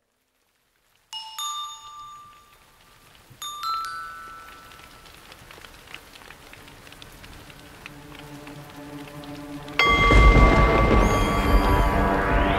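Animated film soundtrack: after a moment of silence, two bell-like chimes ring and fade, then a soft rain-like hiss slowly builds. About ten seconds in, a loud low rumble comes in with sustained musical tones.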